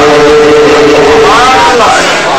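A man singing a naat (Urdu devotional praise song) into a microphone. He holds one long note, then sweeps the pitch up and back down near the end.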